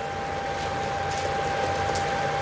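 Steady background hiss of the room with a thin, continuous high whine; no other event stands out.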